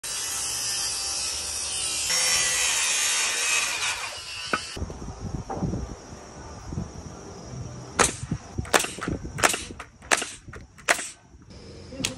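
A pneumatic framing nailer driving nails into rafter lumber, a quick string of sharp shots between about eight and eleven seconds in. Before that, a loud steady noise fills the first few seconds.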